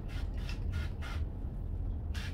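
Hand-pump pressure sprayer misting plant leaves in a few short, faint hissing bursts over a steady low hum.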